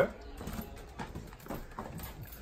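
Faint, irregular footsteps on a floor as people walk into a room, with soft handling noise.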